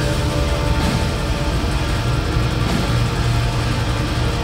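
Live metal band playing loud, with distorted electric guitar over drums in a dense, unbroken wall of sound.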